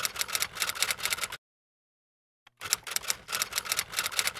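Typewriter typing sound effect: two runs of rapid key clicks, with a gap of about a second of silence between them.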